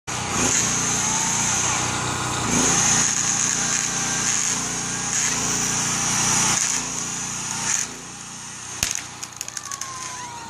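Homelite electric chainsaw running steadily as it cuts through a big cedar trunk: a high motor whine with a few brief dips, stopping just before 8 s. About a second later comes a sharp crack, then a quick run of snaps and splintering as the cut trunk starts to give way.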